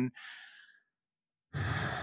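A man breathing out close to a microphone: a short soft breath at the start, then, about halfway through, a longer and louder sigh.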